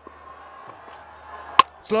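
A single sharp crack about one and a half seconds in: the cricket ball hitting the stumps as an off-cutter slower ball beats the batsman's swing and bowls him.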